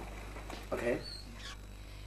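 A single short voiced 'o' about three-quarters of a second in, from a person playing with a toddler in a baby walker, over a faint steady low hum.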